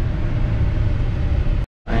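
Steady low road and engine rumble inside a moving pickup truck's cab. It drops out abruptly for a split second near the end, then returns.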